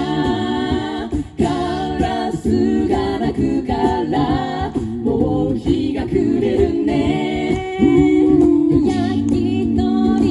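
Five-voice a cappella group of mixed male and female voices singing a song in harmony into handheld microphones, amplified through an outdoor PA system.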